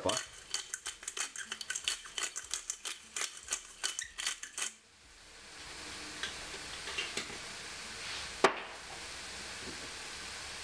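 Pepper mill grinding: a rapid run of small clicks, about seven a second, lasting nearly five seconds and then stopping. One sharp knock follows later, the loudest sound here.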